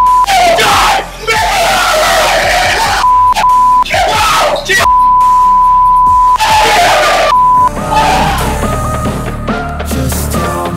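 Two men yelling and screaming a wrestling promo, their swearing covered by a steady censor bleep that sounds five times, the longest about a second and a half. Music comes in from about eight seconds in.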